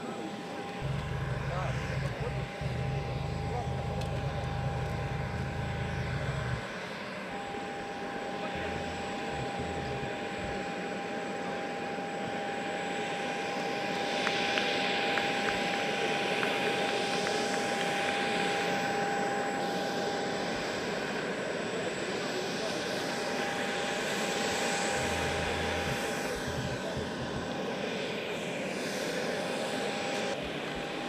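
Jet aircraft running on the apron: a steady high whine over a wash of outdoor noise, with a low rumble through the first six seconds or so.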